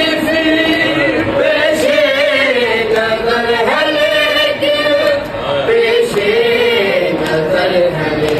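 A group of men and boys chanting an Urdu noha, a Shia mourning lament, together without instruments. The melody rises and falls without a break.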